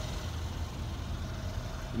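Steady low rumble of an idling vehicle engine, with a faint steady hum over it.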